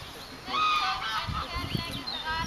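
Birds calling and singing, a run of short chirps and gliding notes, loudest from about half a second in.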